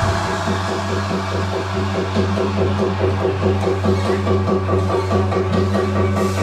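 Vinahouse electronic dance remix. The heavy kick drops out right at the start, leaving a sustained bass note under a fast, evenly repeating synth-and-percussion pattern.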